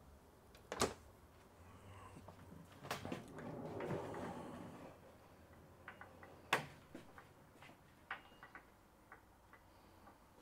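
Sliding barn door on an overhead steel track being handled and rolled: a sharp click, a few seconds of faint rolling rumble, then a knock and a few light ticks.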